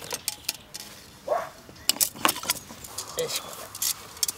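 Scattered sharp metallic clinks and jangling from handling a water jerry can beside a steel storm kettle with a chained stopper.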